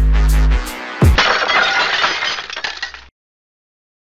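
Electronic outro music with heavy bass and a steady beat stops about half a second in. Just after a second, a glass-shattering sound effect crashes in and decays, cutting off about three seconds in.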